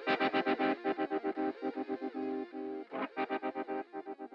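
Instrumental closing bars of a rock song: a guitar through effects playing a rapid, chopped repeating figure, fading out toward the end.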